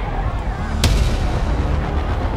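Trailer score and sound design: a deep, sustained low rumble with one sharp impact hit just under a second in.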